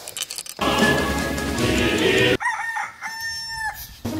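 A loud rushing noise, then a rooster crowing: one long call held on a single pitch before dropping off near the end.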